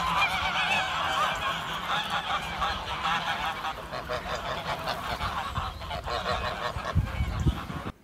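A large flock of domestic white geese honking together in a dense, continuous chorus of overlapping calls, thinning out in the second half.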